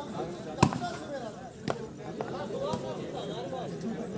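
A volleyball being hit during a rally: two sharp slaps about a second apart, with a few weaker hits later, over faint voices in the background.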